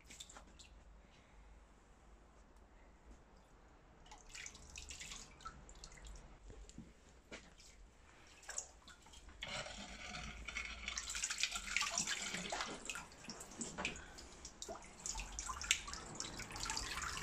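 Pond water splashing and dripping as a hand net is swept through a garden pond. Quiet at first, then small splashes and drips from about four seconds in, which become denser and steadier splashing in the second half.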